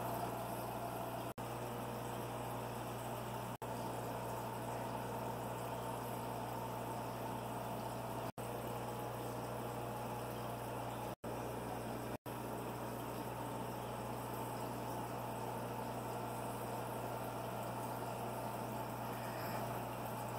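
Steady hum and hiss of running aquarium equipment: air pump, bubbling air line and filter. The sound cuts out briefly about six times.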